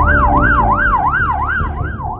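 Emergency vehicle siren in a fast yelp, its tone sweeping up and down about three times a second, over a low steady rumble.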